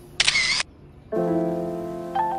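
A camera-shutter sound effect, one short loud burst just after the start, then a held chord of background music on a keyboard-like instrument, which begins about a second in and slowly fades.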